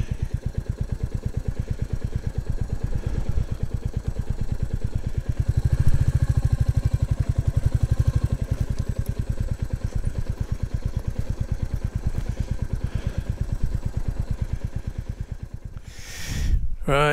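Royal Enfield Classic 350's single-cylinder engine running at low speed with a steady, even beat. It gets a little stronger about six seconds in and fades away near the end.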